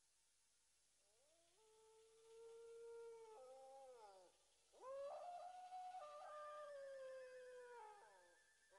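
A cat yowling at night: two long drawn-out cries, the second louder, each rising at the start, held, then sliding down, with a higher wavering tone joining the second cry.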